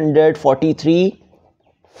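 A man's voice speaking for about a second, then a short pause.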